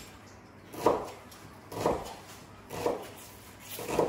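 A kitchen knife slicing onions on a plastic cutting board, four strikes about a second apart.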